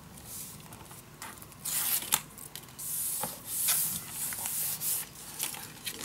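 Sheets of cardstock being slid and rubbed against each other by hand, in several short swishes, with a couple of light taps.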